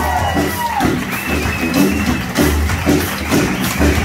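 Live electric blues-rock band playing: electric guitars, bass and drum kit, with a held lead note that bends down in pitch just under a second in, over a steady beat.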